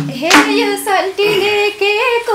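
The band accompaniment cuts off at the start, a single hand clap follows, and then a woman begins singing a dohori line unaccompanied.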